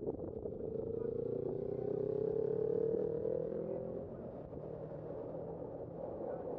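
Engine of a passing motor vehicle accelerating, its note rising slowly in pitch for about three seconds before fading, over steady street-traffic noise.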